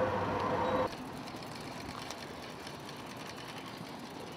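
Street noise with passing traffic. A louder steady drone cuts off abruptly about a second in, leaving a quieter, even hum of traffic.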